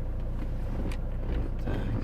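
Hyundai Santa Fe engine idling, a steady low hum heard inside the cabin, with a couple of faint clicks.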